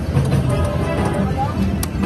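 Casino floor din: electronic slot machine jingles and tones over a steady background of chatter, while a penny video slot spins its reels.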